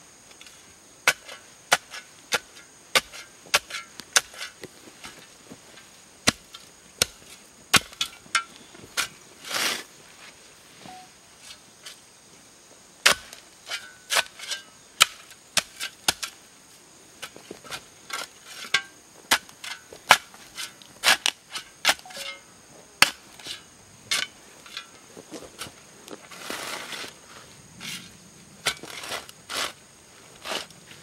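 Metal-bladed hand tools, a shovel and a short hoe, chopping and scraping into loose soil and turf: a string of sharp, irregular strikes, one to two a second, with a longer scraping sweep about ten seconds in and again near the end.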